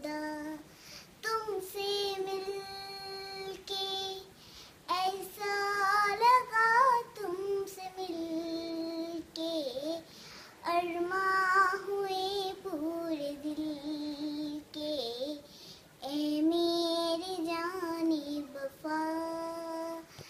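A child singing a Hindi song solo and unaccompanied, in phrases of long held notes with a wavering vibrato and short pauses between lines.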